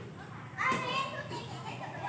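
Children shouting and calling to each other while playing, with one louder shout about half a second in.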